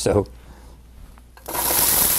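Chopped onion dropped into hot olive oil in a preheated stainless-steel soup pot. After a short quiet stretch a steady sizzle starts suddenly about one and a half seconds in, the sign that the pot is properly hot.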